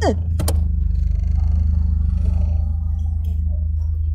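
A Volvo A-traktor's engine idling steadily with a rapid, even pulse, just after it has started. Two sharp clicks come about half a second in.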